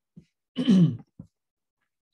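A man clears his throat once, a short rasp that falls in pitch, about half a second in.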